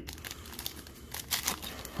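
Foil trading card pack wrapper crinkling as it is handled and torn open: soft, irregular crackles, a few louder ones a little past the middle.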